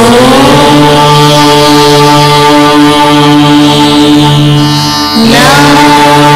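Devotional Sanskrit chanting in long held notes. The pitch slides up at the start, holds steady, then slides up again about five seconds in.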